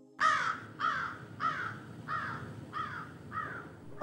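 A bird's harsh calls, six in a row about two-thirds of a second apart, each falling in pitch and each fainter than the last.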